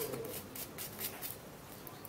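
Faint handling noise: fingers rustling on a small plastic powder vial, with a few light ticks.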